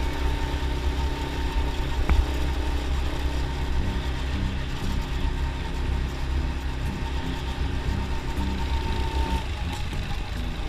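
Go-kart engine running steadily at speed, heard from the kart itself, with low wind rumble on the microphone. The engine note dips briefly near the end, and there is one sharp knock about two seconds in.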